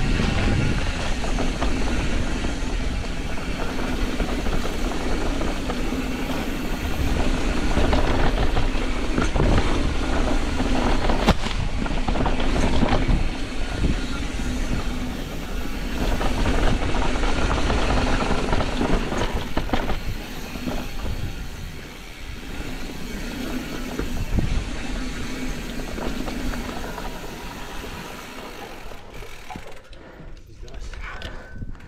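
Mountain bike riding fast down a dirt trail: a continuous rush of tyre noise on dirt, the bike rattling and wind across the microphone, with a few sharper knocks about eleven to thirteen seconds in. It eases off somewhat in the last third.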